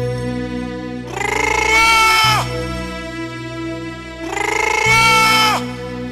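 Sad background music: a steady drone under two long, loud held notes, the first about a second in and the second about four seconds in, each sliding down in pitch as it ends.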